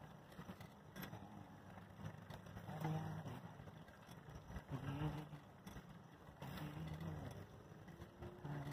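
Low road and riding noise from a vehicle moving along a paved street, with a low hum that swells about every two seconds.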